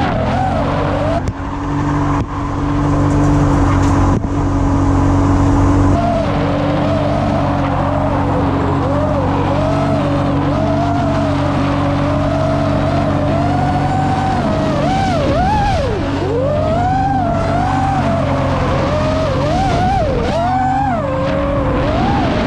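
FPV camera drone's motors whining, their pitch swinging up and down with the throttle, over the BMW E36 328is's M52 straight-six engine and its tyres skidding through a drift.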